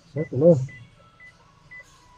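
A car's reverse parking sensor beeping while the car backs into a space: short, high beeps evenly spaced about twice a second, warning of an obstacle behind.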